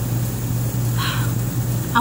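Outdoor air-conditioner unit running with a steady low hum, with a brief soft noise about a second in.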